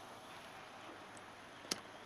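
Faint steady hiss with one small click near the end, as the cassette transport's idler wheel is pushed over with a pen to press harder against the take-up drive.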